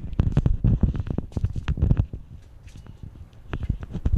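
Handling noise: a fast, irregular run of thumps and rustles for about two seconds, then a few lighter clicks near the end.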